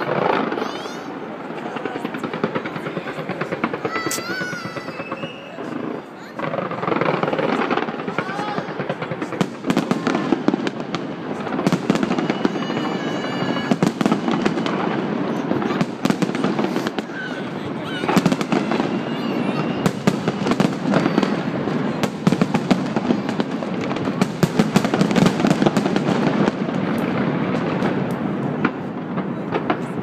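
Fireworks going off continuously, a steady run of bangs and crackles, with people's voices mixed in and a few short high whistles.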